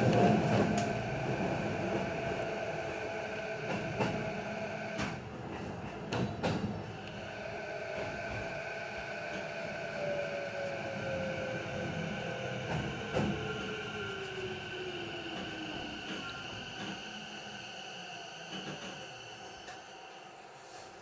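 Electric commuter train heard from inside the cab, running and slowing. Wheels click over rail joints and points a few times. The motor whine falls in pitch as the train brakes, and the running sound fades.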